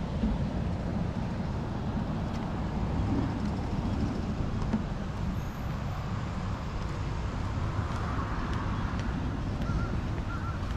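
Steady low outdoor rumble of wind on the microphone and road traffic, with a couple of short bird calls near the end.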